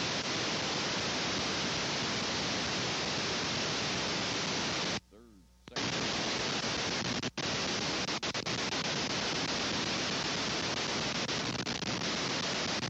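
Steady, loud hiss like static from an old analogue videotape soundtrack. It drops out for under a second about five seconds in and dips again briefly about seven seconds in.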